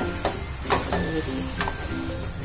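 A steel spoon knocks and scrapes against a steel pan while thick cooked chana dal filling is mashed, giving a few sharp clicks. The loudest comes a little under a second in. Light background music plays throughout.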